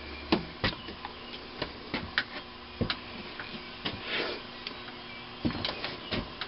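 Scattered light clicks and knocks, about a dozen, unevenly spaced: metal engine parts being handled and set down on a workbench.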